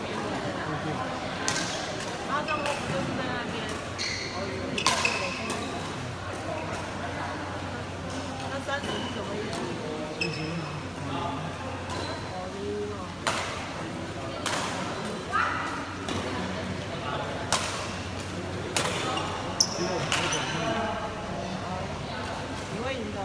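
Badminton rackets striking a shuttlecock in a rally: a run of sharp, echoing hits, most of them in the second half, with short squeaks of shoes on the court floor.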